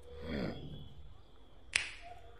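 A brief falling voice-like sound near the start, then a single sharp snap near the end.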